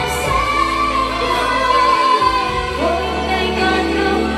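A woman singing into a microphone with live band accompaniment, holding one long note for about two seconds, then starting a new phrase near the end.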